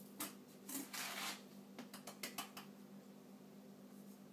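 Granulated sugar being scooped with a measuring cup and tipped into a bowl: a click, a short grainy rush of sugar about a second in, then a few light clicks and taps of the cup.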